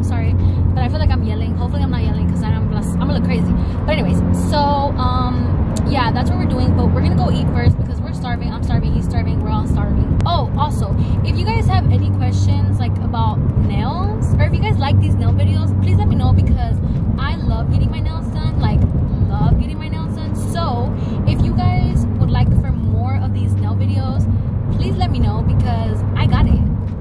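A woman talking over the steady low rumble of road and engine noise inside a moving car.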